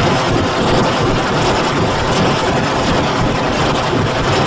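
Loud, dense, distorted roar of digitally effects-processed video audio, with no clear tune or voice, like heavy engine noise.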